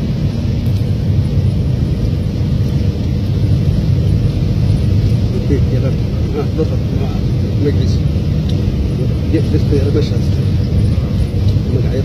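Steady low rumble of a vehicle's engine and tyres heard from inside the cab while driving on a rough dirt road.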